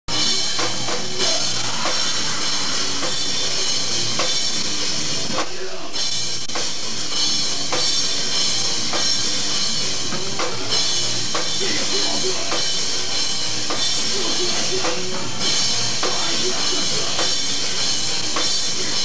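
Rock band playing live, with the drum kit's regular beats standing out over the full band sound, broken by a short drop about five and a half seconds in.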